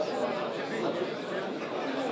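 Chatter of many men talking over one another in a crowded room, with no single voice standing out.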